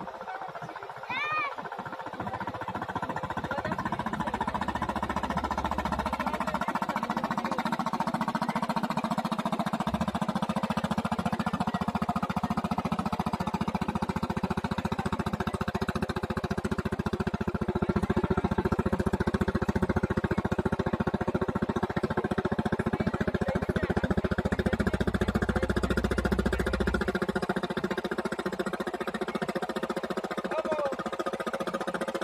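Diesel engine of a wooden river passenger trawler running in a fast, even thudding beat as the boat passes. It grows louder over the first few seconds, then holds steady.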